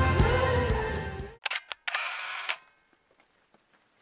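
Background music fades out, then a camera shutter sound effect plays: two quick clicks followed by a short burst about half a second long. It is a photographer's logo sting.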